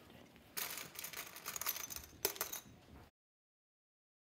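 Copper coins jingling and clinking together in a small plastic bowl, a dense clatter with one sharp clink near the end. It starts about half a second in and cuts off abruptly about three seconds in.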